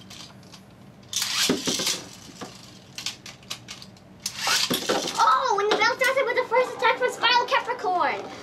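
Two Beyblade ripcord launches: a launcher rips about a second in, sending Poison Zurafa spinning into the plastic stadium, and a second rip a little after four seconds launches Spiral Capricorn. A child's voice follows while the metal tops spin.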